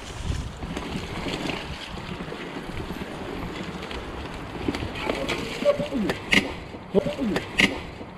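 Mountain bike riding along a muddy woodland trail: tyres squelching and splashing through wet mud, with the bike rattling over the rough ground. There are sharper knocks in the last couple of seconds.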